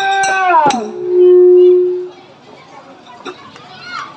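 Folk singing with sharp percussion strikes ends a little under a second in, followed by a loud steady low tone held for about a second. Then quiet murmur of people talking.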